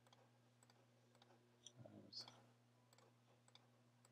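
Near silence with a few faint, scattered clicks: calculator keys being pressed.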